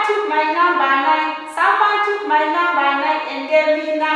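A woman singing a children's counting song in short phrases of held notes, with brief breaths between them.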